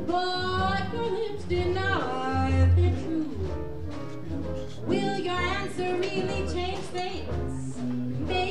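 Small jazz combo playing live: an alto saxophone carries a wavering, gliding melody over the organ's bass notes, with guitar and drums.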